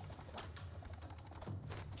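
Animated-show soundtrack: a low, steady, wavering hum with two quick swishes, one about half a second in and one near the end, as a bo staff is handled.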